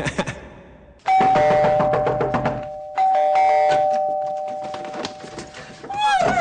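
Two-tone doorbell chime rung twice: a high-then-low ding-dong about a second in, and again about two seconds later, each note ringing on and fading slowly.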